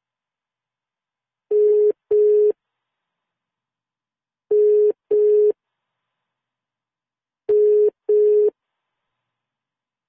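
Telephone ringback tone in the double-ring pattern: two short rings close together, repeated three times about three seconds apart. It means the called phone is ringing and has not yet been answered.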